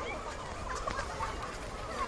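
A large flock of feral pigeons feeding on open paving: a busy mix of many short bird calls over steady background hubbub.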